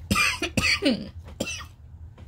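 A woman's hacking coughs: a quick run of harsh coughs in the first second, then one more smaller cough about a second and a half in. She thinks it might be bronchitis.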